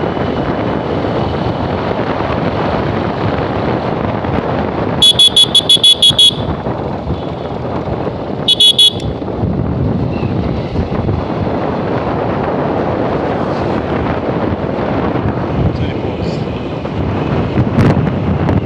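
A motorcycle riding on a dirt road, its engine running under wind on the microphone. About five seconds in, the horn beeps in a quick run of about seven short toots, and twice more at about eight and a half seconds.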